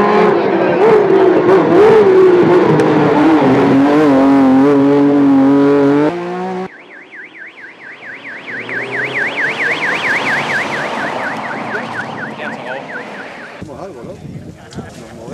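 Porsche 997 GT3 Cup race car's flat-six engine at high revs, pitch climbing and dipping through gear changes, cut off abruptly about six seconds in. Then a fast warbling siren sounds for about seven seconds from a passing course car with a roof beacon.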